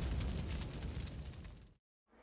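Rumbling, noisy tail of an explosion-like intro sound effect, fading steadily and cutting off to silence shortly before the end.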